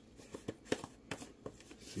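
About five light, sharp clicks and soft rustles from a seasoning container being shaken and handled over a pot of seasoned raw pork.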